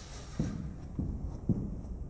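Footfalls of a person sprinting on gym artificial turf: three dull thumps about half a second apart.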